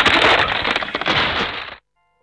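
A loud cartoon crash sound effect: a dense crackling, crunching noise that cuts off abruptly near the end.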